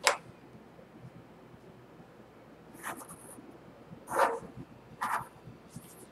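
Mechanical pencil drawn along a drafting triangle on paper: a few short scratchy strokes, starting about three seconds in, as vertical lines are ruled.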